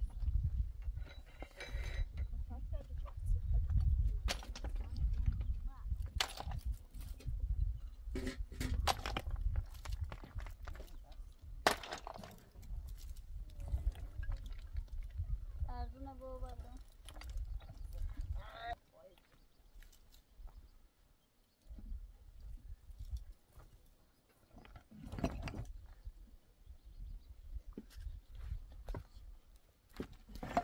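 Stones knocking and scraping as loose rocks are picked up and moved on a rocky slope, with footsteps on loose stone and a low wind rumble on the microphone through the first half. A short wavering call sounds about sixteen seconds in.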